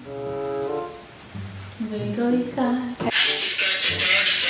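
Music playing: a quieter passage with a low pitched melodic line, then the full song coming back in loudly about three seconds in.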